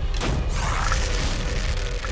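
Animated fight-scene soundtrack: dramatic score over a deep, sustained boom, with a sharp impact hit about a quarter second in.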